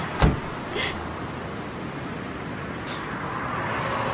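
Steady outdoor background noise of a car park, with one sharp thump just after the start and a softer knock just under a second in.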